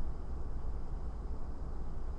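Steady low background rumble with a faint even hiss; no distinct event stands out.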